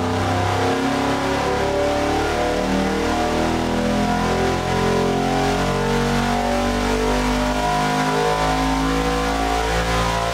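Supercharged 427 cubic-inch LSX V8 with a Magnuson supercharger running a full-load pull on an engine dynamometer, climbing toward 7,000 rpm.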